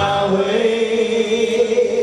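A man singing one long held note into a microphone over a country-style instrumental backing.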